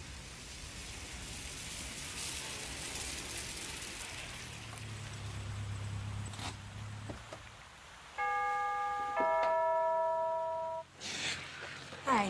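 Doorbell ringing a two-note ding-dong about eight seconds in: a higher chime for about a second, then a lower one held for about a second and a half. Faint background ambience comes before it.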